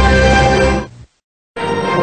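Television studio logo music: one logo's fanfare ends sharply just before a second in, about half a second of silence follows, and the next logo's music starts abruptly.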